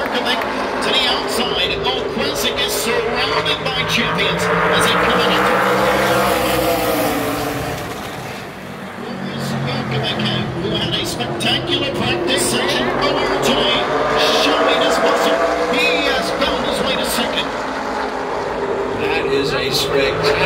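A field of super late model race cars running at full speed around a short oval track, the engine note rising and falling as the pack passes. The sound dips about eight seconds in, then builds again.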